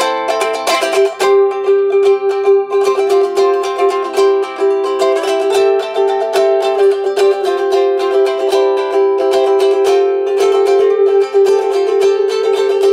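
Hand-made G-Labo 'Tabilele' ultra-thin travel ukulele, with a body 2 cm thick, played solo: a tune of many quickly plucked notes, with one note ringing on steadily beneath it. The tone sits rather high, as the thin body gives it.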